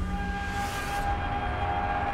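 A sustained high tone, rising slightly about half a second in, held over a low rumble.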